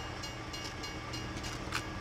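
Large engine idling with a steady low hum.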